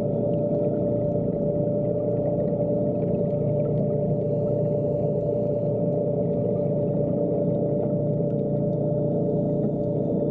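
Underwater diving scooter's motor and propeller running at a constant speed, heard underwater: a steady hum with an even whine.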